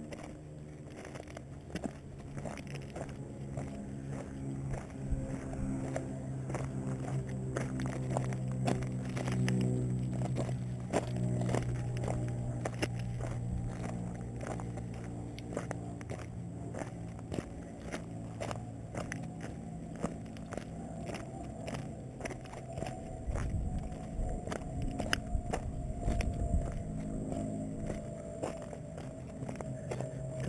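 Footsteps crunching and scraping on loose rock and gravel, in many irregular steps. Behind them, a steady engine drone swells in the middle and then slowly falls in pitch toward the end.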